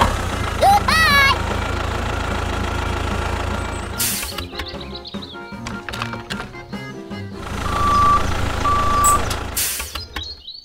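Background music over a low, steady tractor engine sound effect. The rumble drops out for a few seconds in the middle, then returns. Two short beeps come near the end.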